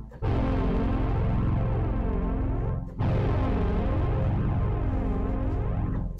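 Roland Alpha Juno 2 analog synthesizer played from its keyboard: two long held chords with a heavy low end, the second struck about three seconds in. The tone swirls in a slow, regular sweep.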